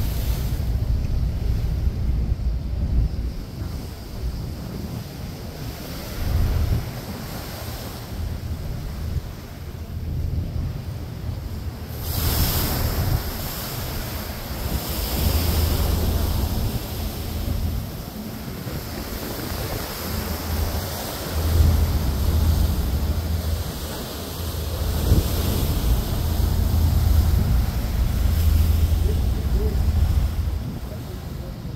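Wind buffeting the microphone on a moving boat, over the rush of choppy water; the gusts come and go, with a strong one about twelve seconds in.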